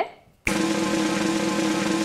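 Snare drum roll played as a suspense sound effect. It starts suddenly about half a second in and holds steady and fast.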